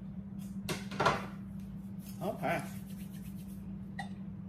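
A sharp clunk about a second in, then a brief humming "mm" from a woman tasting the fried fish, over a steady low hum.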